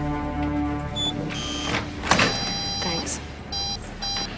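Background music dies away, then a heavy glass security door is pushed open with a loud clunk about two seconds in. Short electronic beeps repeat near the end.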